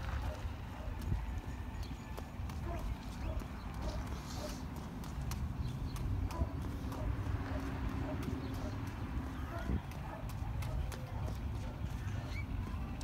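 A toddler's small shoes stepping on a concrete sidewalk: a quick, even run of footsteps.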